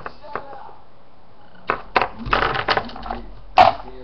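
Charm bracelet and charms being handled on a wooden tabletop: clicks, knocks and rattles of metal and hard pieces against the wood. There is a dense cluster of clicks about two seconds in and one sharp knock near the end.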